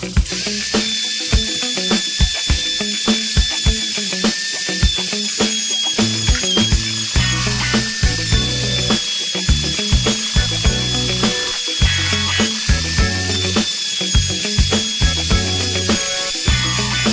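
Background music with a steady beat, over a wood router running with a steady high whine as it mills a wooden stave drum shell round.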